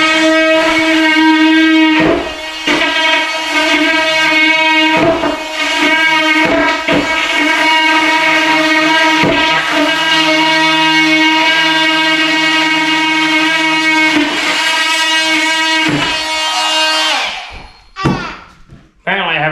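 Background guitar music with sustained chords that change every few seconds, fading out near the end.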